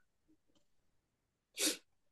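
A single short, sharp breathy burst from a person near the microphone, about a second and a half in, otherwise near silence.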